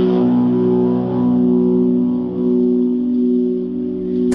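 Live rock music between sung lines: a held guitar chord rings on steadily with reverb, and there is no singing.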